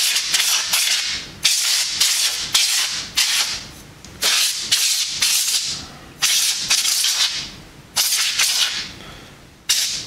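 Can of compressed air fired in short, repeated hissing blasts, about fifteen in ten seconds and often two or three in quick succession, blowing dust out of a graphics card's heatsink fins.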